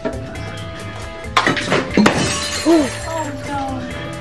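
A sudden crash of shattering glass about a second and a half in, ringing briefly, over background music with a steady beat; a short vocal exclamation follows.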